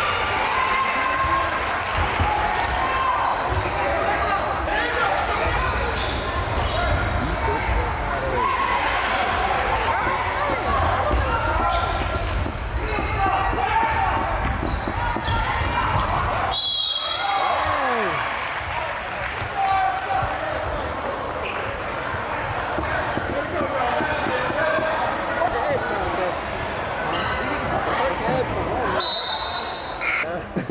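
Live basketball game sound in a school gymnasium: a steady din of indistinct crowd voices and shouting, with a basketball bouncing on the court. The din dips briefly about halfway through.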